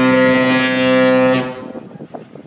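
The Disney Fantasy cruise ship's musical horn holding one long, loud note, which stops about one and a half seconds in and dies away in echo.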